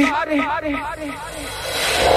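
Electronic dance music breakdown: a short pitched vocal sample repeats about four times a second and fades out in the first second. Then a noise sweep rises in level, building toward the beat's return.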